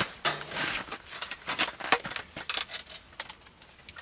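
Irregular rustling with many small clicks and knocks, from a person moving close to the microphone and handling gear, thinning out near the end.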